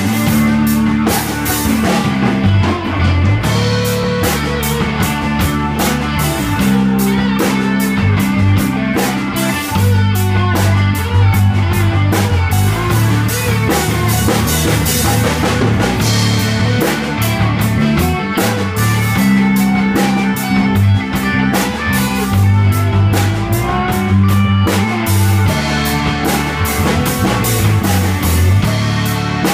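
Live rock band playing loud in a small room: electric guitars over a drum kit keeping a steady beat with cymbal strokes.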